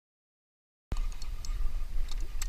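Dead silence for about the first second, then a sudden cut in to a low rumble of wind on the microphone with scattered light clicks.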